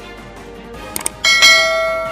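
Sound effects of a subscribe animation: a quick double mouse click about a second in, followed at once by a bright notification-bell chime that rings and slowly fades.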